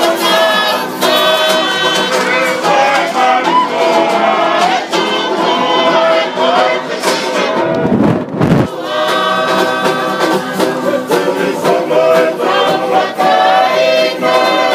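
A choir of mixed voices singing a Tongan dance song in chorus, continuous and full. About eight seconds in there is a brief low rumble under the singing.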